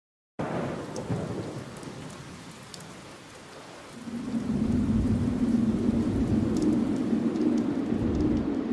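Thunderstorm: a clap of thunder breaks suddenly just after the start and dies away over steady rain, then a low rolling rumble of thunder builds from about four seconds in.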